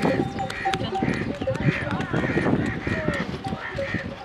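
A camel herd on the move: metal neck bells clanking and ringing steadily, with many short knocks of footfalls on dry ground.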